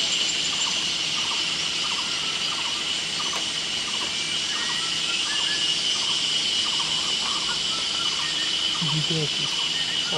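Forest insect chorus: a steady, high-pitched drone with many short chirps scattered over it.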